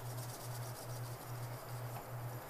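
Background film score: a low pulsing bass tone, a little over two pulses a second, with a faint high flickering shimmer over the first part, a tense underscore.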